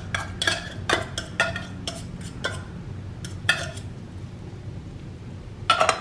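Fork and spoon clinking and scraping against aluminium tuna cans as the tuna is scraped out: a run of quick light clinks over the first few seconds, then a brief clatter of metal near the end.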